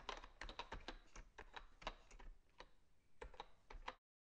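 Rapid, irregular typing on keys, several clicks a second, with a brief pause near the end before it cuts off abruptly.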